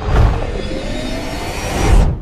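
Cinematic intro sound effects: a dense rushing whoosh over a deep rumble, with a tone slowly rising in pitch, swelling to a loud peak at the end.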